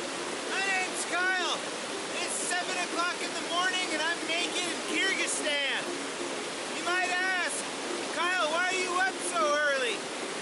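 A fast whitewater river rushing steadily. Over it come many short, high-pitched, voice-like calls, each rising and falling in pitch, repeated throughout.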